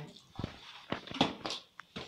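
Hands kneading soaked bulgur in a large steel bowl: a handful of short, sharp knocks and clicks as fingers and bowl meet, the loudest a little after a second in.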